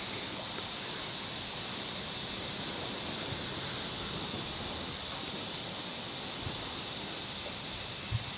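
Steady outdoor background hiss from an open grass field, an even high-pitched wash with no distinct events in it.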